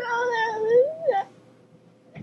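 A cat meowing: one long, drawn-out, wavering meow, then a short one just after a second in, and then it stops.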